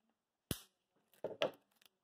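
Trading cards being handled at a table: a sharp tap about half a second in, then a quick run of clicks and rustling.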